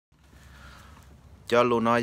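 Faint, low background noise, then a person starts speaking about one and a half seconds in.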